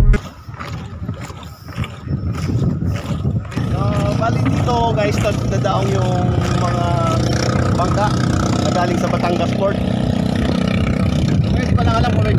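A boat engine running steadily, setting in about three and a half seconds in, with people's voices talking over it. A few knocks come in the first seconds.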